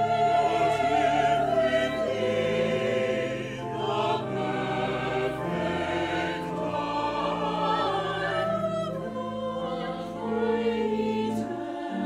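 A church choir singing in parts, voices with vibrato over steady held low notes from a pipe organ.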